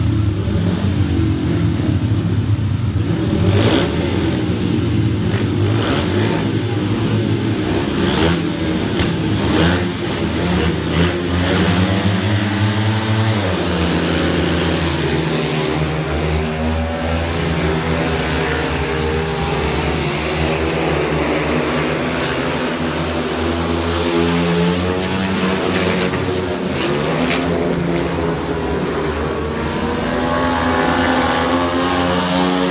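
Speedway motorcycles' 500 cc single-cylinder methanol engines revving together at the start gate, then racing, their pitch rising and falling as the riders open and shut the throttle.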